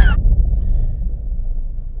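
A low rumble, loud at first and slowly fading, the tail of a boom or impact.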